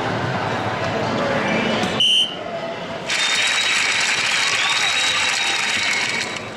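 Electronic soft-tip dartboard machine: a short, loud high beep about two seconds in as a dart registers, then from about three seconds a loud, steady electronic sound effect with a held high tone, the machine's end-of-game sound as the leg is won.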